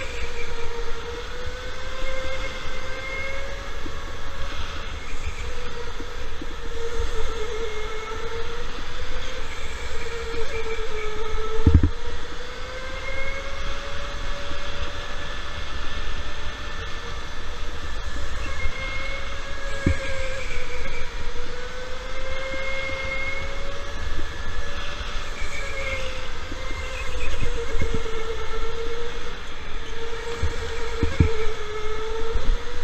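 Electric go-kart motor whining, its pitch rising and falling as the kart speeds up and slows through the corners, over the rumble of the kart on the track. Two sharp knocks cut through, about twelve seconds in and again near twenty seconds.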